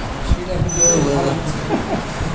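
Indistinct speech over a steady background hiss.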